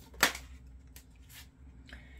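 A tarot card pulled from the deck, with one sharp click of card against card about a quarter second in, followed by a few faint card clicks.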